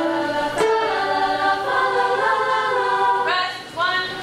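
High school mixed-voice chorus singing held notes in several parts, the chords shifting from phrase to phrase. It breaks off briefly near the end before the next phrase begins.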